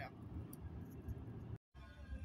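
Low, steady rumble of road and engine noise inside a moving car's cabin, broken by a sudden gap of dead silence about a second and a half in.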